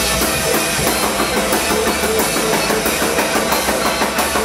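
Rock band playing live and loud: a drum kit with fast, busy hits and cymbals over electric guitar and keyboard.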